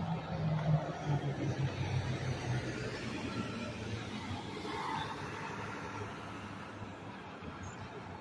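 A fire engine's diesel engine running with a low steady hum, loudest in the first few seconds and then easing, over street noise.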